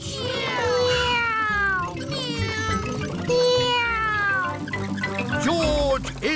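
Cartoon voices cheering with several long calls that fall in pitch, over background music.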